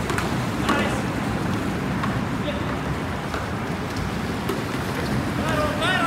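Canoe polo players shouting across the water: a short call about a second in and a louder, rising call near the end, over a steady rushing background noise.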